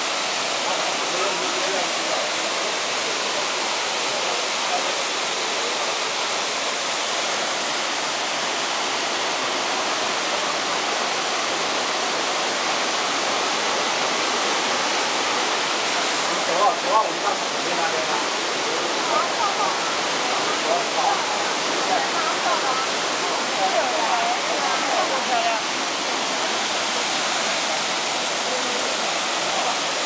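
Waterfall in high flow pouring heavily into its plunge pool: a steady rush of water.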